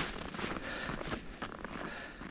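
Irregular crunching and rustling of a person moving on foot in snow, growing fainter near the end.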